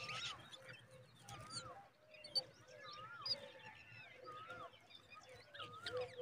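Birds calling: a short rising-and-falling whistled note repeated about once a second, over many quick high chirps.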